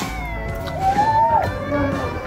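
A cat meowing once, a rising then falling call about a second in, over background music.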